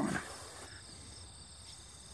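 Faint, steady high-pitched chirring of insects in the grass, an even background drone with no break.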